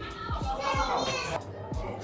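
Children's voices chattering and calling out, over background music with a steady beat.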